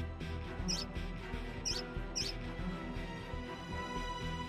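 Three short, high squeaks, like a cartoon mouse's, about a second, two seconds and two and a half seconds in, over soft background music.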